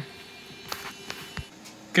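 Faint steady electrical hum from the bench electronics, with a few light clicks about a second in.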